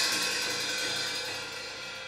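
Peking opera percussion: the crash of a gong and cymbals rings on and fades steadily.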